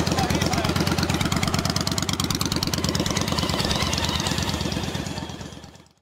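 Motorcycle engines running at low speed as the bikes ride slowly past, a steady rapid pulsing that fades out near the end.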